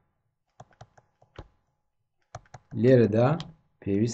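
A quick run of about six light clicks and taps in the first second and a half, typical of a stylus tapping and writing on a graphics tablet.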